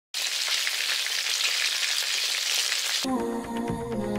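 Breaded shrimp and potato rolls deep-frying in hot oil, a dense steady crackle and sizzle. It cuts off suddenly about three seconds in, and music takes over.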